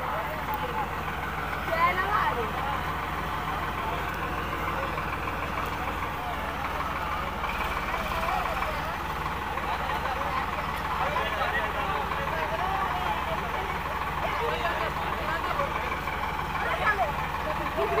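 Standard 345 tractor's diesel engine running steadily while the tractor sits stuck in mud, with voices over it.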